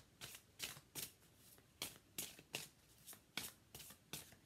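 A deck of reading cards being shuffled by hand: a run of quick, light snaps of card against card, about two or three a second.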